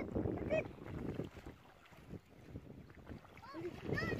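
Wind rumbling on the microphone at the water's edge, loudest in the first second and easing off in the middle, with a few short voice sounds.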